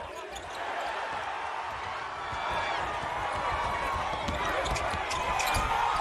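Live game sound in a basketball arena: crowd noise growing louder, with a basketball bouncing on the hardwood court.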